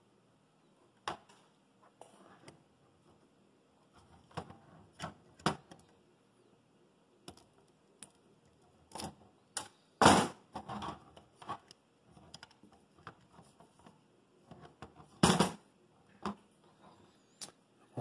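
Scattered small clicks and knocks of a 3D printer's hot-end carriage and its cables being handled, with a few louder sharp snaps, the loudest about halfway through and another near the end, among them flush cutters snipping a cable tie.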